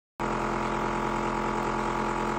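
Small tabletop cotton candy machine running, its motor spinning the heated head with a steady hum of several even tones.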